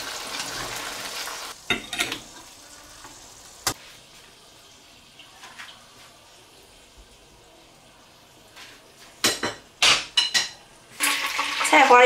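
Potato slices deep-frying in a wok of hot oil with a steady sizzle, and chopsticks and a wire strainer clicking against the wok as the slices are lifted out. The sizzle then drops away, a few sharp metal clatters follow near the end, and a loud sizzle starts as cauliflower florets go into the hot oil.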